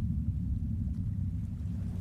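A steady, low rumbling ambient drone, the background sound bed laid under the narration.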